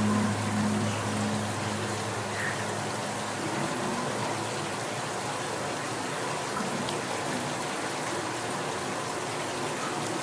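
Shower spray running steadily, an even hiss of falling water on the body and tiles. A low hum fades out within the first second.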